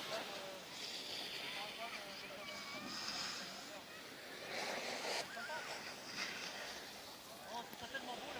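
Faint distant voices over a steady outdoor hiss, with a few short swells of rushing noise.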